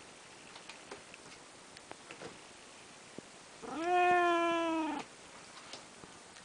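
An orange tabby domestic cat gives one long meow, a little over a second long, about halfway through, holding its pitch and dipping slightly at the end.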